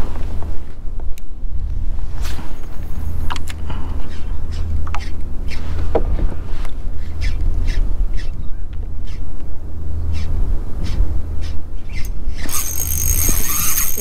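Wind rumbling on the microphone, with scattered light clicks and knocks. Near the end a high, steady buzz starts.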